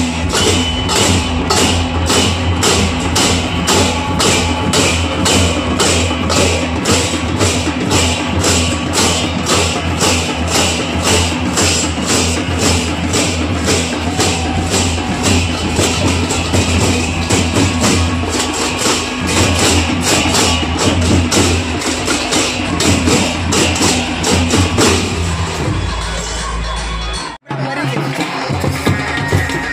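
Large brass hand cymbals clashed by a marching troupe in a steady procession rhythm, about two to three clashes a second. Near the end the sound cuts off abruptly for a moment.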